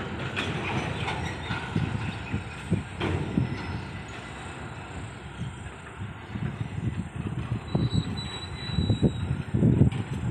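Diesel locomotive hauling a container freight train, rumbling along the line with irregular low thumps that grow louder toward the end.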